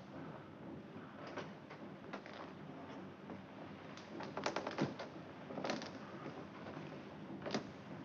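Faint rustling and scattered small clicks and knocks as a man climbs out of a bunk. There is a cluster of quick clatter a little past the middle and a single sharp click near the end.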